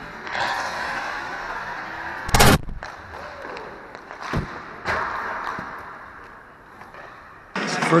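Ice hockey warm-up on an indoor rink: a steady hiss of skates and play, with one loud bang about two and a half seconds in and two sharp, short knocks of pucks and sticks around four and a half and five seconds.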